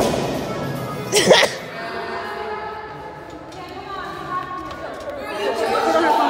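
Recorded music playing under people's voices, with a short loud vocal outburst about a second in, then steady held musical tones.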